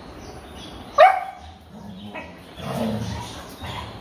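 Dogs at rough-and-tumble play: one sharp, loud bark about a second in, followed by lower, rougher growling sounds over the next two seconds.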